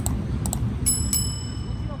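Subscribe-button sound effect: two short clicks about half a second apart, then a double bell ding with ringing high tones, over a steady low street rumble.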